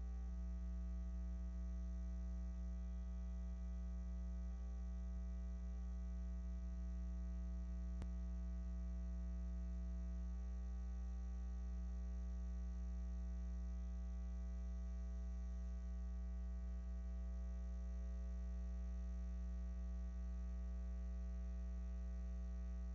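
Steady electrical mains hum, a low buzz with a ladder of evenly spaced overtones that does not change, and one faint tick about eight seconds in.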